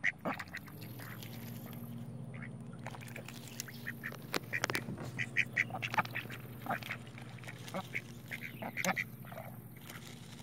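Ducks quacking in short runs of quick calls, busiest around the middle and again near the end, over a steady low hum.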